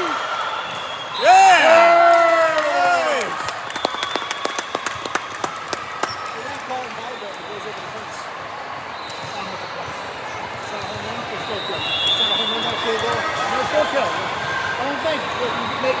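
High-pitched girls' cheering shouts in a gymnasium about a second in, marking a won rally, followed by a quick run of sharp knocks echoing off the hardwood floor. After that, a murmur of scattered voices in a large echoing hall.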